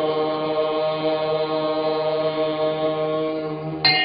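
Sustained chanting: one long held note over a lower steady drone, sliding up slightly as it begins and then holding level. A brighter ringing tone comes in suddenly near the end.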